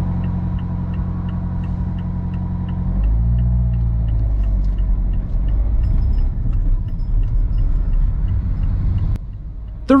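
Car engine heard from inside the cabin, idling steadily, then pulling away about three seconds in with a louder, rising engine note and road rumble. A light regular ticking, about two or three a second, runs underneath.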